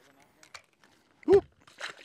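Faint clicks, then a man's loud "woo", followed just under two seconds in by a brief splash as a fish is tossed back into the lake.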